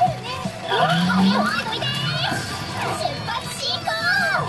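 P Fever Powerful 2024 pachinko machine playing its electronic audio: high-pitched, childlike voice samples and quick gliding effect tones over music.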